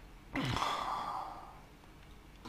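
A man sighing: one breathy exhale of about a second, starting a third of a second in and fading out.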